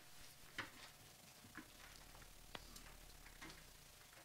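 Near silence with a few faint, irregularly spaced clicks and soft rustles, from players handling sheet music and instruments; one sharper click a little past halfway.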